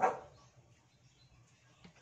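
A single short, loud animal-like call right at the start, dying away within about half a second.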